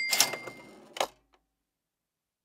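Cash register 'ka-ching' sound effect: a mechanical clatter with a ringing bell tone that fades within the first second, then a single sharp click about a second in.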